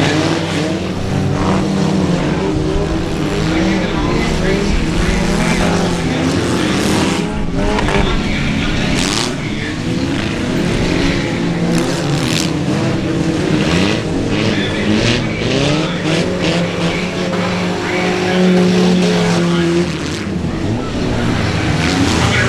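Several old stripped-down race cars' engines running hard together as they race around a muddy dirt track, the engine notes rising and falling as the cars accelerate, lift and pass.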